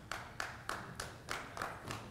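Hand claps from the audience in a slow, even rhythm, about three claps a second, in a pause in the talk.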